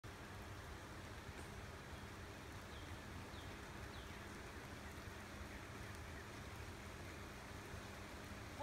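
Faint, steady outdoor ambience: an even hiss with a low rumble, and a few faint, short, high chirps from birds in the forest in the first half.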